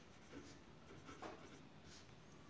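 Faint scratching of a pen writing by hand on a paper workbook page, in a few short strokes.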